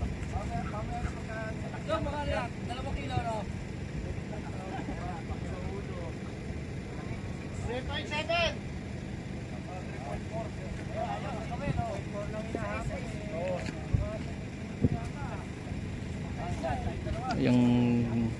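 Faint scattered chatter of several men's voices over a steady low rumble of wind on the microphone. A short steady low hum comes in near the end.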